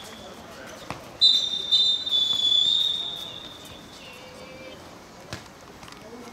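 A referee's pea whistle blown in one long, slightly warbling blast of about two seconds, starting about a second in. A few faint knocks of a ball being played are heard around it.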